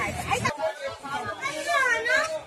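People talking in the background of a busy market street, no single voice clear. The low background rumble drops away suddenly about half a second in.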